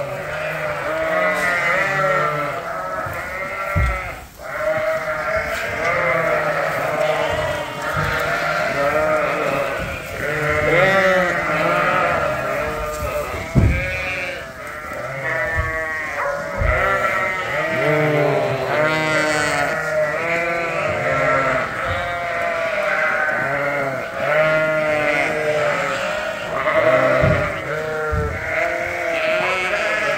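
A barnful of Poll Dorset ewes and lambs bleating at feeding time, many overlapping calls at once with no break. A few dull thumps sound now and then.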